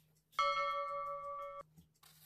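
Bell-like chime sound effect: one ringing tone of several pitches that starts suddenly, holds for just over a second and cuts off abruptly.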